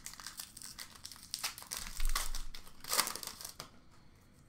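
A hockey card pack's wrapper crinkling and tearing as it is opened by hand, in irregular crackles with louder bursts about two and three seconds in.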